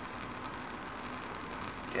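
Steady, even hiss of a lit Bunsen burner's gas flame.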